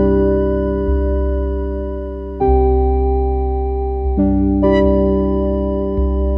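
Background music: soft piano playing sustained chords that change every second or two, each chord fading slowly.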